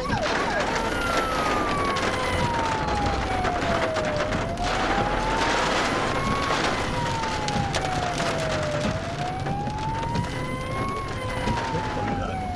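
An emergency vehicle's siren, heard from inside a car, switches just after the start from a fast yelp to a slow wail, its pitch sliding down and back up about every four and a half seconds. Under it runs the steady hiss and patter of heavy rain on the car.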